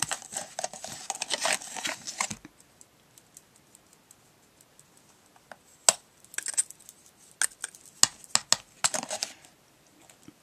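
Loose fine glitter rustling and sifting in a plastic tub for about two and a half seconds. After a quiet spell come scattered light clicks and taps against the plastic tub.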